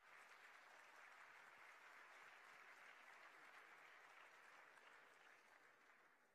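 Faint audience applause, a dense even patter of many hands clapping that starts abruptly and tapers slightly near the end.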